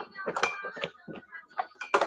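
Handling noise close to an earphone microphone: a string of short knocks, clicks and rubs as a person settles into a chair and adjusts the wired earphones, with a few brief vocal sounds mixed in.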